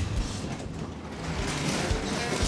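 Roll-up rear door of a box truck being pushed open, its metal panels rattling and creaking along the tracks, getting a little louder in the second half.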